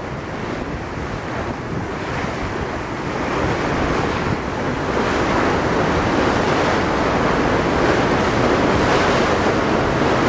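Steady rushing and churning of water in the wake thrown up by the paddle steamer Waverley's paddle wheels, with wind buffeting the microphone; it grows louder about three to four seconds in.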